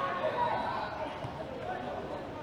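Live pitch ambience of an amateur football match: players' voices calling out across the field, faint and distant, over a steady outdoor background.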